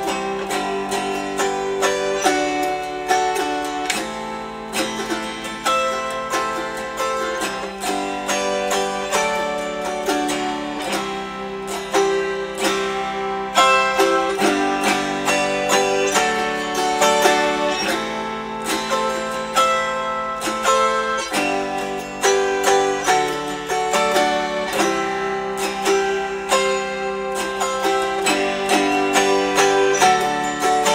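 Autoharp strummed through a tune, with the chord changing every second or two.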